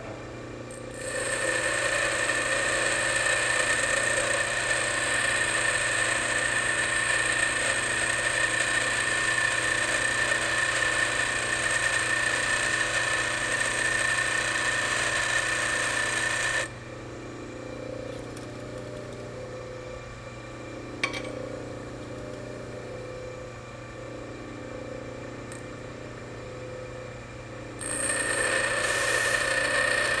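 Bench grinder wheel grinding the end of a high-speed steel lathe tool bit, a steady hiss with a high whine, for about fifteen seconds. The bit is then lifted off and only the grinder running free is heard, a low hum with a single click, until grinding starts again near the end.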